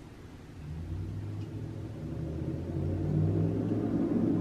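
Traffic going by outside, a low rumble from a passing truck that grows louder over the few seconds.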